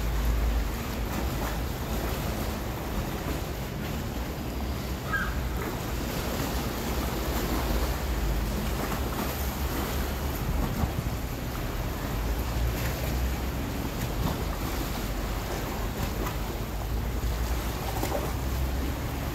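Wind rumbling on the microphone over a steady wash of choppy water.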